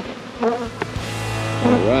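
Swarm of honeybees buzzing around open hives, with single bees passing close by. About halfway through, background guitar music fades in underneath.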